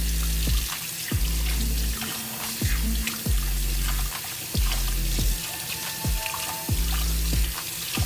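Kitchen faucet running a steady stream into a stainless steel sink as hands are rinsed under it, under background music with a heavy bass beat.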